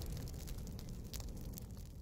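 Dying tail of a cinematic boom sound effect: a low rumble with faint scattered crackles that fades steadily away.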